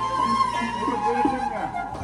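Bamboo transverse flute playing a held, slightly wavering high note that steps down to lower notes in the second half, over electronic keyboard accompaniment.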